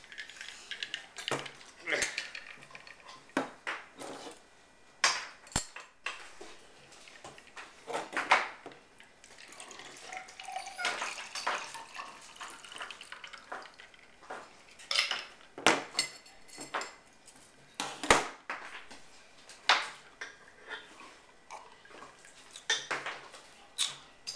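Ice cubes rattling and clinking in a Boston cocktail shaker (steel tin over a mixing glass), with sharp knocks of glass and metal. About halfway through, the drink is poured over ice from the mixing glass into a serving glass.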